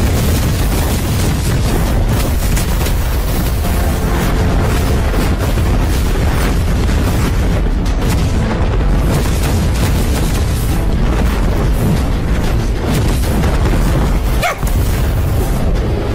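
Animated-film battle sound mix: a dense, loud, continuous run of booms, explosions and impacts with music underneath, dropping out briefly about fourteen and a half seconds in.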